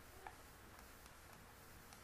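Near silence with a couple of faint clicks of a computer mouse, one just after the start and one near the end.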